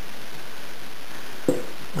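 Steady hiss, with the soft rustle of a cheesecloth pad being wiped over a laminated wood rifle stock to work in dye, and a brief faint sound about one and a half seconds in.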